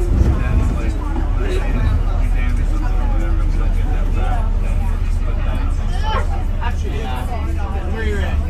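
Steady low rumble of a moving vehicle's engine and tyres heard from inside, with indistinct voices talking throughout.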